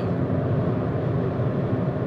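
Steady road and wind noise inside the cabin of a VW e-Up! electric car cruising at about 100 km/h.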